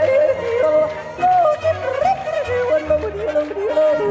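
A woman yodeling, her voice flipping back and forth between low and high notes in quick leaps.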